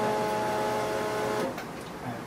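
A steady, even hum of several pitches held together, which stops abruptly about one and a half seconds in.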